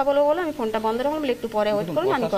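A woman speaking continuously in a fairly high voice.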